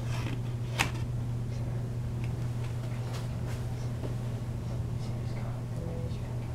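Faint rustling and handling of a paper backing card being worked loose from a steelbook, with one sharp click about a second in, over a steady low hum.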